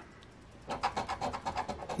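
A coin scraping the scratch-off coating from a paper lottery ticket in rapid, rhythmic back-and-forth strokes, beginning about two-thirds of a second in.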